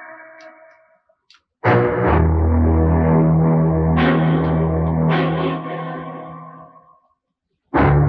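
Dramatic film-score stings. A sudden loud chord with a deep sustained bass comes in about a second and a half in, takes two further accents, and fades away. A new sting hits just before the end.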